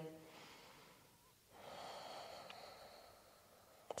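Near silence, with one soft breath out through the nose about a second and a half in, lasting about a second and a half.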